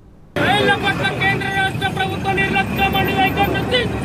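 Protesters shouting slogans in high, strained voices over steady road-traffic noise. The sound cuts in about a third of a second in.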